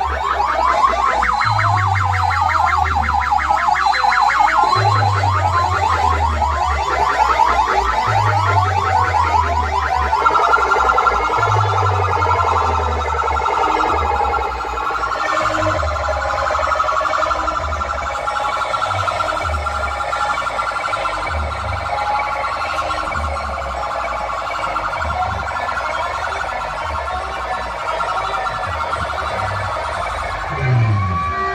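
Loud DJ music blasting from banks of horn loudspeakers: a siren-like electronic warble over heavy bass hits about every two seconds. The bass beat quickens in the second half.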